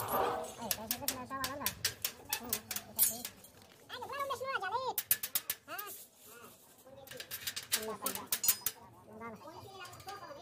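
Steel tie wire being twisted and snipped with pliers on a rebar column cage: clusters of sharp metal clicks and clinks. A wavering voice-like call sounds in between, most clearly about four seconds in.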